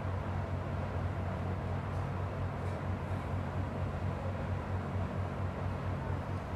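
Steady hum and airy hiss of a laminar airflow cabinet's blower running.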